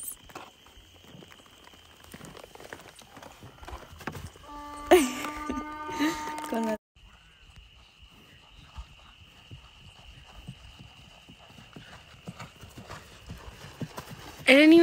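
Horse's hooves clip-clopping at a walk on artificial turf, soft irregular steps. A loud drawn-out call rings out about five seconds in.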